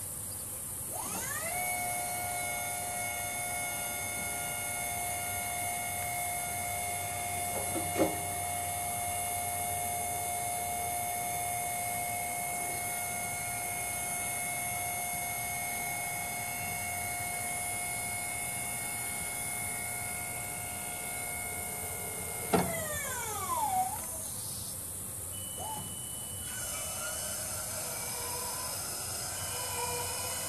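The electric hydraulic pump of a 24-volt Haulotte 5533A towable boom lift, running as the boom is lowered. Its whine rises in pitch about a second in and holds steady, then cuts off with a click a few seconds before the end and winds down.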